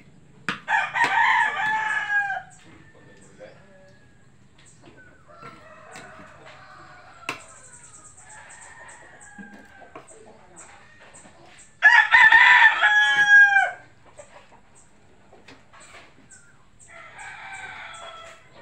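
A rooster crowing twice, each crow about two seconds long, the first about half a second in and the second about two-thirds of the way through, with fainter clucking calls between.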